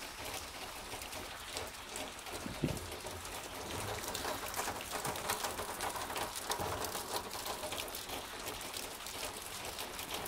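Heavy rain falling steadily, a dense patter of individual drops hitting surfaces close by. One brief low thump about two and a half seconds in.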